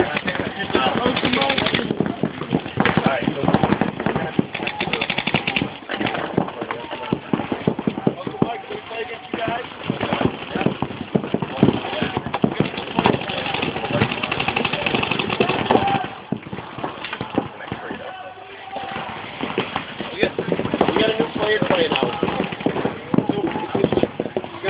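Paintball markers firing in rapid strings of sharp pops during a game, with indistinct voices under them.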